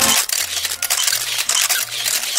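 Dense run of rapid, mostly high-pitched clicking and rustling noise that takes the place of the music, cutting off just after two seconds.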